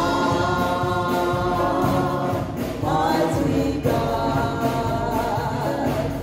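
A gospel worship song: a man sings lead into a microphone, with choir voices and musical accompaniment. The notes are long and held, with a short break and a rising slide just under halfway through.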